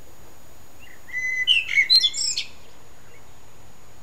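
A songbird sings one short phrase of quick, varied chirping notes, about a second and a half long, starting about a second in.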